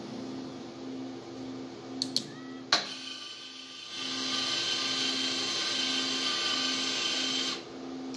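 Small belt conveyor's motor starting about four seconds in with a steady high whine and running until shortly before the end, when it cuts off as the laser sensor detects the block it carries. A few sharp clicks come before it, as the robot's gripper releases the block onto the belt, over a low pulsing hum.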